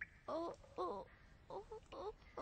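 A young boy's voice making three short whimpering sounds, each bending up and then down in pitch.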